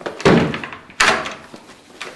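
Toilet cubicle door shutting with a heavy thud, then a sharp, louder click about a second later.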